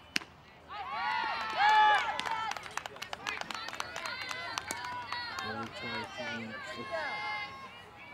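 A single sharp crack just after the start, then high girls' voices shouting a cheer, with a patter of hand claps after it. A man's voice talks near the end.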